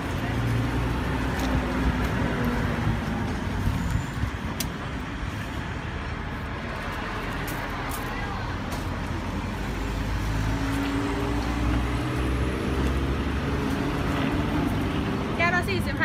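Road traffic passing close by: a motor vehicle's engine rumble swells at the start, fades, and swells again from about ten seconds in, over steady traffic noise.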